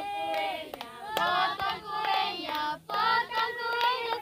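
A group of voices, children's among them, singing a birthday song together, with hand clapping throughout.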